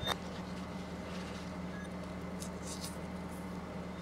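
Faint rustling and tearing of a mandarin orange's peel being pulled apart by hand, in a few brief bursts, over a steady low electrical hum. A short click comes right at the start.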